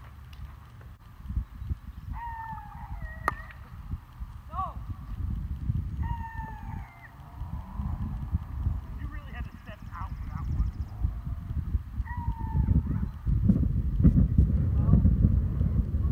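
Outdoor rumble with the thuds of people running on grass, getting louder near the end as a runner comes close. A few short, high, falling calls sound over it, and there is one sharp click.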